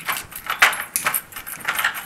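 Light metallic jangling: a quick, irregular run of small clinks.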